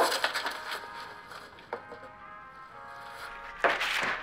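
Wrapping paper being ripped and torn off a large cardboard gift box, a rapid run of tearing strokes loudest at the start and dying away within about a second and a half, with one more rip near the middle.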